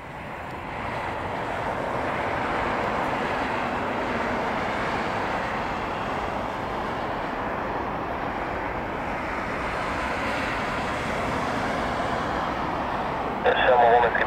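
Boeing 747SP's four turbofan engines running, a steady roar that fades in over the first couple of seconds. A man starts speaking just before the end.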